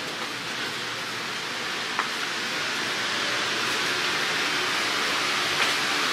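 Steady hiss of indoor store background noise that grows slightly louder, with a faint click about two seconds in.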